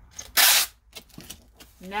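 Packing tape pulled off the roll of a handheld tape gun in one quick, loud screech about half a second in, followed by a few light taps.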